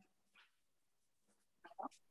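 Near silence, broken near the end by two short, faint vocal sounds in quick succession, like a small animal's whimper or a brief voice over a video call.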